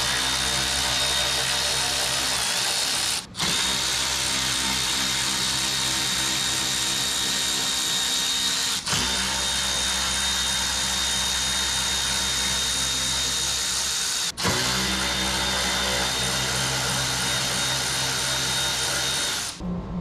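Cordless electric ratchet whirring steadily as it runs 10 mm bolts out of the radiator cover. The whir carries a fixed high whine and drops out briefly three times.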